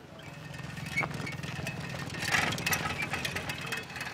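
A small engine running, its fast low pulsing growing louder to a peak a little past halfway and then fading.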